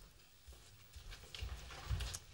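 A few faint low footfalls and light clicks in a quiet room, with the most distinct thump near the end.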